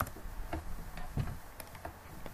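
A computer mouse clicking about five times at uneven intervals, short light clicks over faint room hiss.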